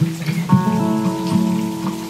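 Acoustic guitar playing a fingerpicked arpeggio, notes plucked about every half second and ringing on over one another, layered with a loop from a TC Electronic Ditto looper pedal.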